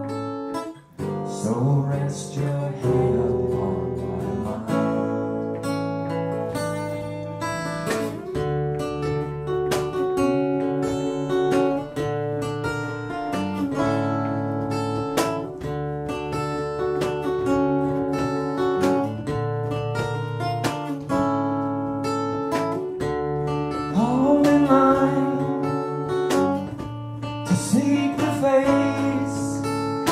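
Live acoustic guitar strumming over an electric bass line in an instrumental passage of a folk-rock song. A voice comes in briefly twice in the last few seconds.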